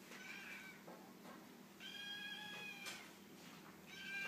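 A nine-week-old kitten mewing twice: a short high mew just after the start, then a longer, steady one about two seconds in.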